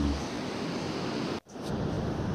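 A steady hiss of background noise that cuts out abruptly for a split second about one and a half seconds in, then returns.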